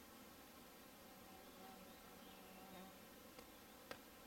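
Very quiet woodland ambience with the faint buzz of a flying insect wavering from about halfway in, and a couple of light ticks near the end.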